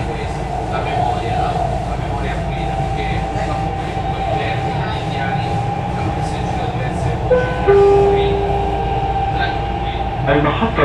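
Dubai Metro train running on an elevated track: a steady motor whine over a low rumble. About seven and a half seconds in, a short two-note electronic chime sounds and fades away.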